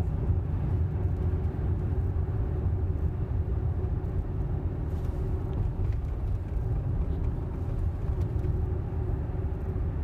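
Steady low road and tyre rumble inside the cabin of a Tesla electric car cruising at about 29 mph.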